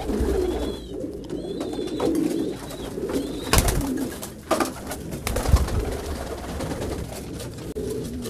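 French meat pigeons cooing, with a few sharp knocks near the middle.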